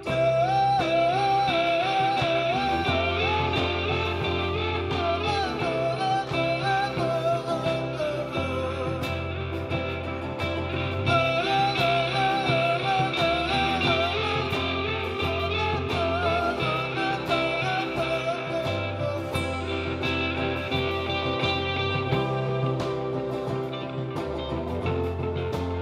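A live rock band playing: electric guitars and drums over a bass line that moves every second or two, with a man singing a wavering melody at the microphone.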